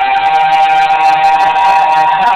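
A woman's singing voice holding one long, steady high note, with a second held pitch joining slightly above it about a second in.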